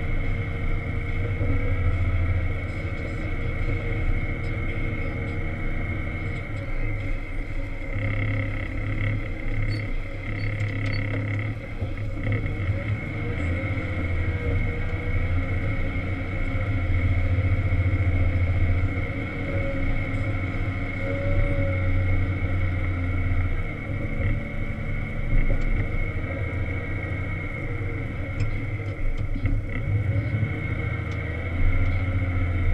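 Wheel loader's diesel engine running steadily, heard from inside the cab as a low drone with a thin, steady high whine above it; the engine's level rises and falls a little as the machine works.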